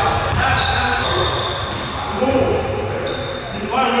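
Live sound of an indoor basketball game: a basketball bouncing on a hardwood court, brief high sneaker squeaks, and players' voices calling out.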